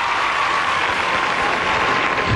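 Live studio audience applauding as the music stops.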